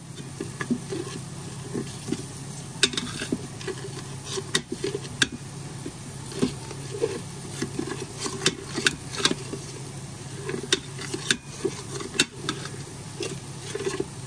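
A kitchen utensil stirring flour into the spices in a saucepan, scraping and clicking irregularly against the pan as the thickener for an enchilada sauce is worked in.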